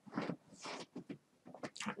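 Faint, scattered small clicks and breathy noises in a pause between a man's spoken words.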